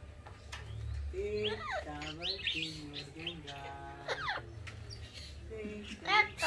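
Amazon parrot (lorito real) making speech-like calls and whistles that glide up and down in pitch, mostly between about one and four and a half seconds in.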